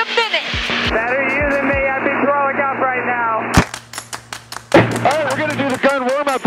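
Talk over an aircraft intercom, thin and cut off in the highs. About three and a half seconds in, music comes in with a fast, even run of sharp ticks, about seven a second, under more talk.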